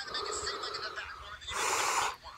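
A puppet character's voice from the skit, then a loud, breathy gasp near the end, played back from a screen's speaker.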